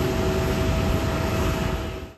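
Jet engines of an AIR DO Boeing 767 airliner running during its landing rollout: a steady whine with a few held tones over a low rumble, starting to fade near the end.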